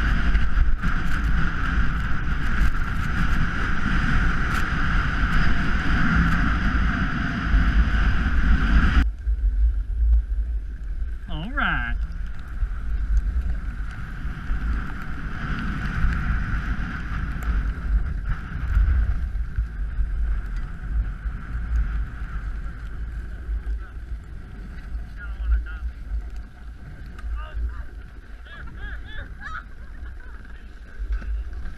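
Wind rushing over an action camera's microphone during a downhill ride on snow, with a steady low rumble and the hiss of the board or skis on the snow. The sound changes abruptly about nine seconds in, and a brief wavering call is heard about twelve seconds in.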